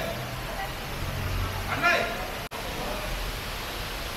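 Steady hiss of rain and traffic on a wet city street, with a low hum underneath. A short burst of a voice comes just before two seconds in, and the sound drops out for a split second at about two and a half seconds.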